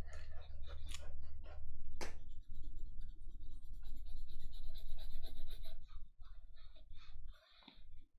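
A pencil scratching across sketchbook paper in quick, repeated strokes as a figure is sketched, pausing briefly near the end.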